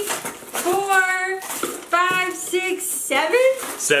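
Mostly a woman's high, excited voice, with light rattling of plastic lure packages as they are lifted out of a cardboard box.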